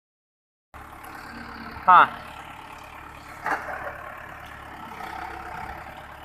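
Mahindra Arjun Ultra-1 555 DI tractor's diesel engine idling steadily, with a short spoken "haan" about two seconds in.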